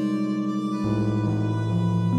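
Synthesizer intro music: sustained held tones with a pulsing wobble, the bass moving to a lower note about a second in.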